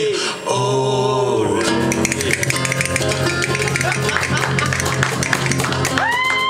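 Acoustic guitar band ending a song: a final held sung note, then a sustained closing chord with clapping rising over it from about two seconds in.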